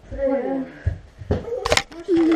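A short bit of a voice, then a few sharp knocks and rubs as a hand grabs the GoPro right over its microphone, in the second half.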